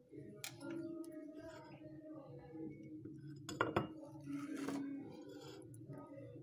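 A knife and a ceramic plate clinking a few times as a slice of gelatin is cut and served, with two sharper clinks close together about three and a half seconds in.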